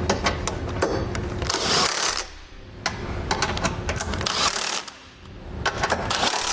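Cordless impact wrench with a 22mm socket on an extension, hammering hitch hex bolts tight into the frame-rail weld nuts. It runs in three bursts of rapid clatter, each about two seconds, with short pauses between them.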